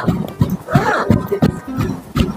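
A woman laughing in loud, breaking bursts over background music.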